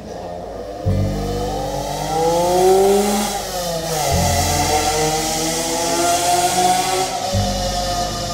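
A car engine revving as it drives by, rising in pitch, dropping about halfway through, then climbing again, over background music.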